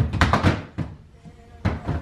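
Coat hangers knocking and clacking against the closet rail as coats are lifted off: a cluster of sharp knocks at the start, a quieter lull, then another knock near the end.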